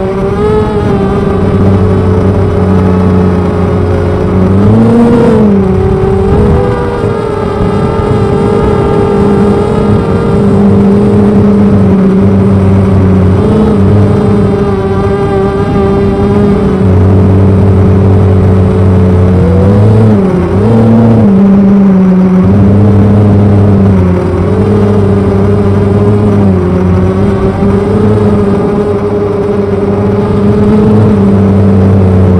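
FPV250 quadcopter's electric motors spinning 6x3-inch carbon propellers: a loud, steady whine heard from the onboard camera, with short swells in pitch about five seconds in and again around twenty seconds as the throttle is pushed. The uploader finds these props short of thrust for the 900 g frame.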